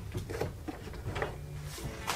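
Faint small clicks and handling noise of fingers lifting a Series 3 Apple Watch's display off its case.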